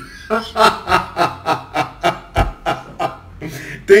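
A man laughing in a quick run of short breathy bursts, about five a second, dying down about three seconds in.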